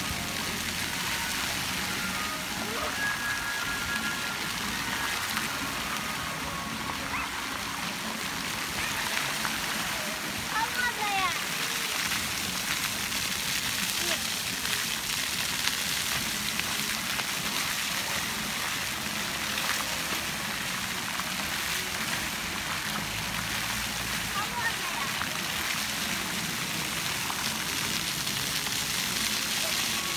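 Fountain jets splashing continuously: a steady rush of falling water, with voices of people around it in the background.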